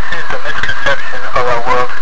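A loud voice over a steady hiss.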